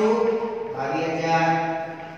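A man's voice drawing out long, held syllables in a chant-like sing-song, two sustained pitches one after the other, the second lower, trailing off near the end.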